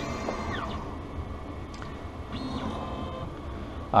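Lens edger cutting a polycarbonate lens with water running over it, putting the safety bevel onto the concave back edge in the last seconds of the cutting cycle. It runs steadily, with a few short rising and falling tones.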